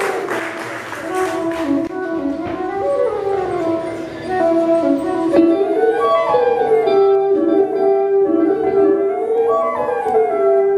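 Solo flute playing a slow live melody, its notes sliding and bending from one to the next.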